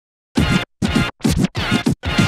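DJ turntable scratching in the soundtrack: four quick scratches after a brief silence, leading into the music.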